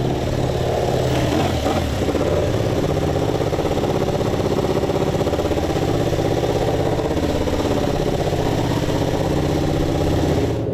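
Ducati two-seater MotoGP bike's V4 engine coming off the throttle as it rolls in, settling within the first couple of seconds to a steady idle.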